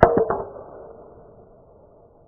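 Golf club striking a teed-up ball on a full swing: one sharp crack right at the start, with a ringing tail that fades over about a second and a half.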